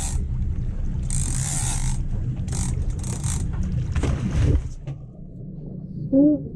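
Steady low rumble of the boat and wind on the microphone, with several short hissing bursts of splashing water. The rumble drops away about five seconds in.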